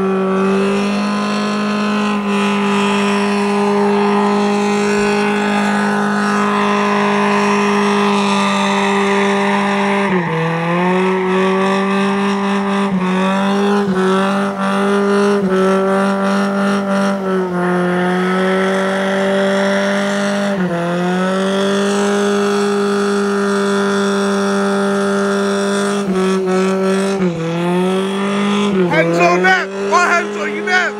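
Lifted Toyota truck doing a burnout: its engine is held at high revs at a steady pitch and dips briefly and climbs back about six times, with tyres spinning in smoke.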